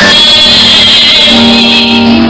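Very loud live gospel band music with held notes and a wavering, shrill high tone over it.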